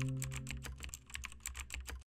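Keyboard-typing sound effect: a quick run of light clicks, several a second, keeping time with text typed out letter by letter, over the fading tail of a low music chord. It cuts off abruptly at the end.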